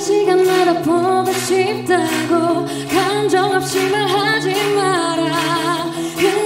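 A female singer sings a pop song live over band accompaniment, her melody gliding above sustained backing chords and a steady rhythmic beat.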